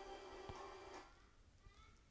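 Relaxation music playing from the Samsung Galaxy Book Pro 360's built-in laptop speakers, with a single click, then cut off abruptly about a second in as the laptop's audio is muted, leaving near silence.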